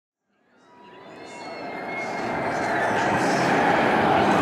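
A noise that fades in from silence and swells steadily over about three seconds into a full, even rush, with a few faint thin tones near the start.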